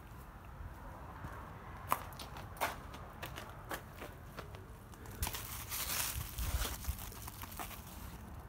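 Quiet, scattered crackling and rustling of footsteps and brushing leaves among pumpkin plants, with a sharp click about two seconds in.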